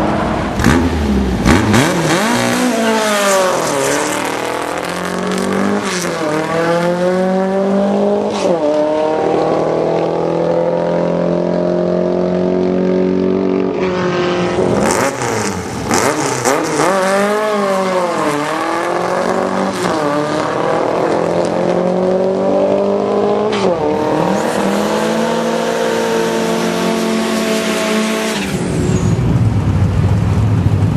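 Drag-racing street cars' engines revving hard and accelerating down the strip. The pitch climbs again and again with sharp dips, like quick gear changes, in two similar runs, the second starting about halfway through. A low rumble comes in near the end.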